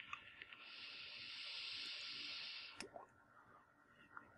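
A few small clicks, then a faint steady hiss lasting about two seconds as someone takes a puff on an Innokin iClear 30 clearomizer fitted to an iTaste VTR e-cigarette mod, ending in a sharp click.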